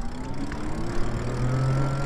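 Lyric Graffiti e-bike's electric motor whining, rising steadily in pitch as the bike picks up speed.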